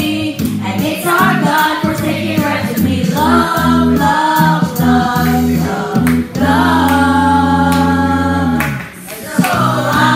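A group of women singing together, one voice amplified through a microphone and loudspeaker. A long note is held from a little past six seconds to nearly nine, then the singing picks up again.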